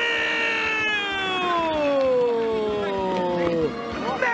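A male football commentator's long, sustained goal shout, one held vowel whose pitch slides slowly downward for nearly four seconds, cutting off just before the end.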